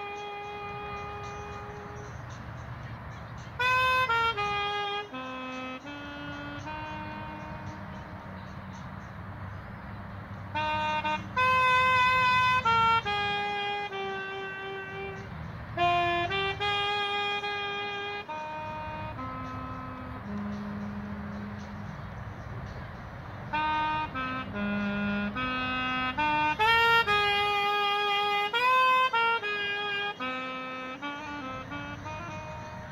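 Solo saxophone playing a slow melody of long held notes, some phrases swelling louder.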